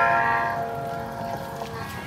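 Electric guitar tone in a bolero, struck just before and ringing out, fading away over about a second and a half.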